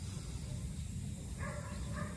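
Quiet low background rumble, with a faint held, whine-like tone coming in a little past halfway.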